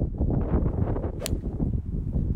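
Golf club striking the ball on a full swing: one sharp crack about a second in, over a low rumble of wind on the microphone.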